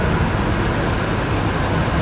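Steady rumble of vehicle engines with a faint low hum.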